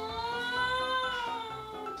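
A woman's long, high-pitched whining hum of indecision, held for nearly two seconds with the pitch rising a little and then falling, over soft background music.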